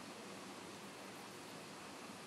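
Faint, steady hiss of room tone, with no distinct sounds.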